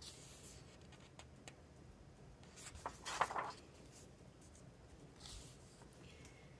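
A colouring-book page being turned by hand: a soft paper rustle, loudest about halfway through, with a fainter swish near the end.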